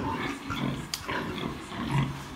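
Pigs in a pen: a sow and her young piglets grunting, with a sharp click about a second in.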